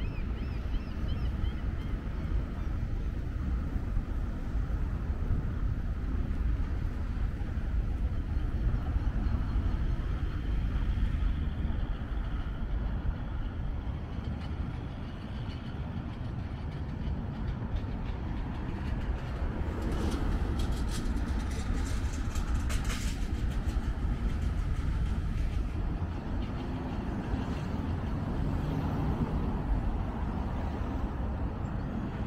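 Outdoor city ambience: a steady low rumble with distant vehicle noise, and a few sharp clicks around twenty seconds in.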